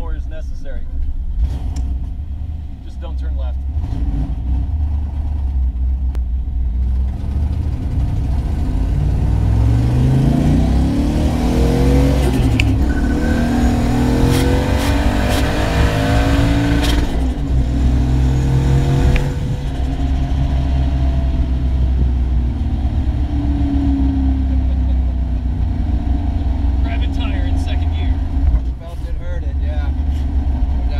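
Ford small-block V8 in a 1979 Fairmont heard from inside the cabin, accelerating hard. The engine note climbs repeatedly for about ten seconds, starting around eight seconds in, as it pulls through the gears with a rush of noise. It then settles to a steadier cruise and winds down.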